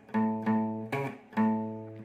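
Acoustic guitar playing single picked bass notes on the low E string: the fifth fret twice, a short higher note at the ninth fret, then the fifth fret again. Each note rings and fades.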